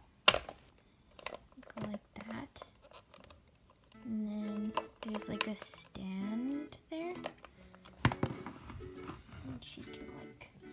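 Hard clear plastic blister packaging clicking and tapping as it is handled, with a sharp click just after the start and another about eight seconds in. A voice sounds through the middle without clear words.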